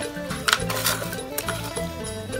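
Background music with a few sharp, light metallic clinks from a metal pot as hands knead raw meat inside it.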